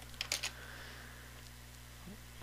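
A few quick keystrokes on a computer keyboard in the first half second, then a faint steady low electrical hum.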